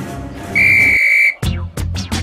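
A loud steady high whistle tone held for under a second, then background music with plucked guitar strikes starts.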